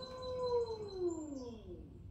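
Electric pottery wheel motor whining, its pitch rising as the wheel is sped up, holding briefly, then falling away steadily over about a second as the wheel slows down.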